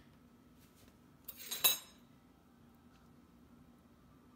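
A brief clatter and ringing clink of a kitchen utensil against a hard container, about a second and a half in, over quiet room tone with a faint steady hum.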